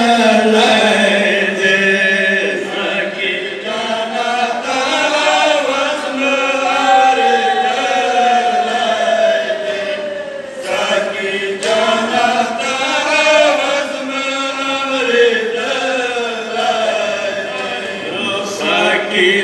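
A group of men chanting a Pashto noha (matam lament) together over a microphone, with long held notes that slide and waver in pitch.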